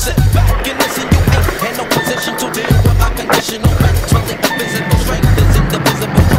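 A skateboard rolling on concrete, with sharp clacks of the board popping and landing, over a loud hip-hop beat with deep bass hits about once a second.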